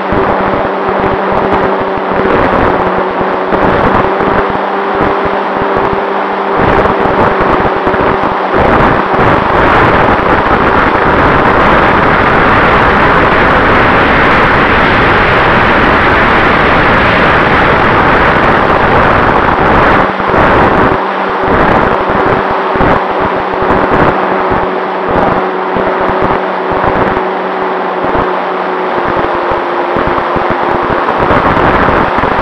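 Great Planes PT-19 model airplane's motor and propeller heard from a wing-mounted camera in flight: a steady hum under heavy wind rush on the microphone. About nine seconds in, the wind noise swells and swamps the hum for roughly ten seconds, then the hum comes back.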